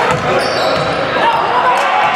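Basketball being dribbled on a hardwood court, with indistinct voices echoing in the gym.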